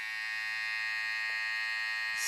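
Kemei 1593 cordless hair trimmer fitted with a BaBylissPRO Chameleon blade, running at 6,500 RPM with a steady buzz.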